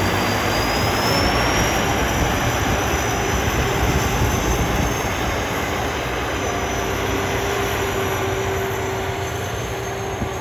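Hino 7.7-litre inline-six turbo diesel with three turbochargers, running as the tracked rice harvester drives across a field. A high whistle sits over the engine and rises slightly in pitch about a second in.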